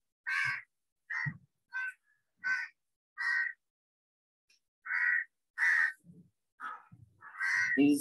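A bird calling: about ten short, harsh calls at irregular intervals, with a pause of over a second in the middle.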